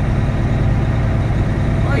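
Cummins ISX diesel engine of a Volvo 780 semi-truck running steadily while the truck rolls slowly, heard inside the cab as a loud, even low hum.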